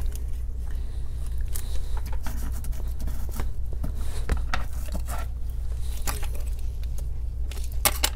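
Double-sided adhesive tape being handled and pressed onto a laptop's plastic display back cover by gloved hands: scattered small taps, scrapes and tape crackle at irregular moments, over a steady low hum.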